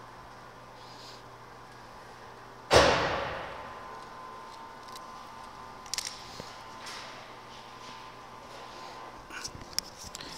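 Workshop background with a faint steady hum. About three seconds in, a sudden loud noise breaks in and dies away over about a second. A few light clicks follow later.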